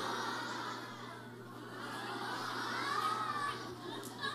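Many children's voices at once: a young audience shouting and chattering together in a crowd-like babble, loudest about three seconds in.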